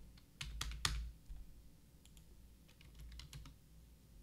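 Computer keyboard typing, faint: a few sharper key presses in the first second, then a quick run of lighter taps between about two and three and a half seconds in, as a stock ticker is keyed in.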